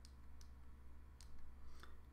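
A few faint, sharp clicks of the Ledger Nano S hardware wallet's small push buttons being pressed to scroll through its firmware information screens.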